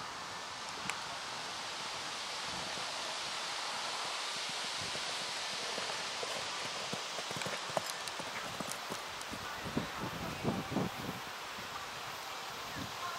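Hoofbeats of a horse cantering on a sand arena, a run of dull thuds that grows louder and closer in the second half, over a steady outdoor hiss.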